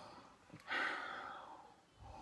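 A person breathing in deeply through cupped hands held over the nose and mouth: one long airy breath starting a little under a second in and fading away over about a second.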